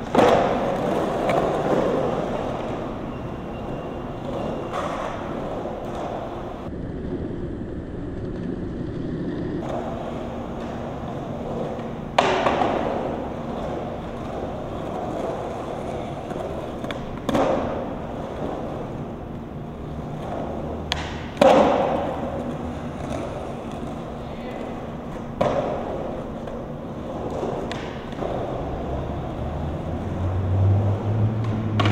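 Skateboard wheels rolling steadily on a concrete bowl, with several sharp knocks and thuds as the board strikes and lands on the concrete, the loudest near the start, about twelve seconds in and about twenty-one seconds in.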